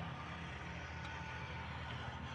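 Steady, low drone of an engine running, unchanging throughout.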